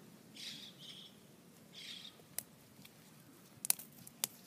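A bird calls twice, short and high, in the first half; near the end come a few sharp clicks as a thin asparagus spear is snapped off by hand.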